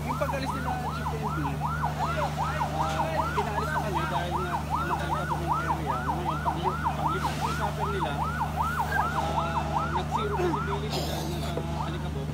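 Emergency vehicle siren in fast yelp mode, a rapid rise-and-fall wail repeating nearly three times a second, over a steady low engine hum; it stops about a second before the end.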